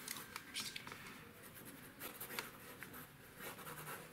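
Black pen sketching on drawing paper: a run of quick, faint, irregular scratching strokes.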